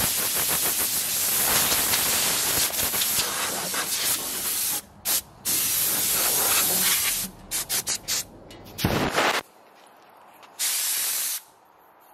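Compressed-air blow gun hissing as it blows off a band sawmill: one long blast of about five seconds, a short pause, a second blast of about two seconds, then a string of short quick bursts and a last blast near the end.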